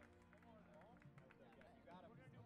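Near silence with faint, distant voices talking in the background.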